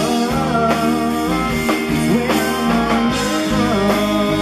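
A live country band playing, with acoustic guitar over keyboard and drums, a steady full mix with no pause.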